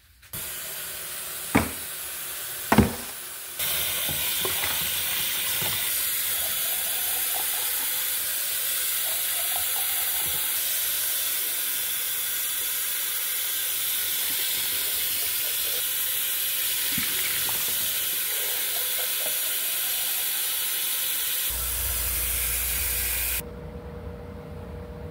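Kitchen tap running into a plastic cup held under the stream in a stainless steel sink, rinsing it. The stream steps up louder about three and a half seconds in and is shut off near the end, with two sharp knocks early on.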